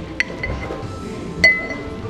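Two sharp clinks of metal bar tools against a shaker tin and mixing glass. The second, near the end, is louder and rings briefly. Background music plays underneath.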